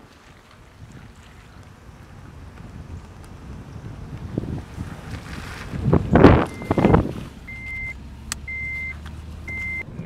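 Car noise builds and peaks in two loud rushes about six to seven seconds in. A high electronic beep follows, repeating about once a second.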